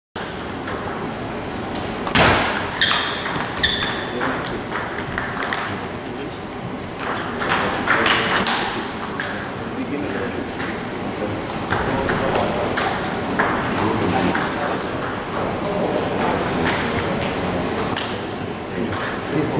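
Table tennis balls clicking against tables and bats, many light irregular taps, with people talking in the background and a louder knock about two seconds in.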